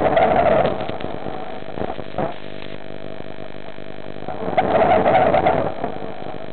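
Two bursts of a diver's exhaled air bubbling out, each about a second long and about four and a half seconds apart, the rhythm of underwater breathing. A steady hum runs underneath.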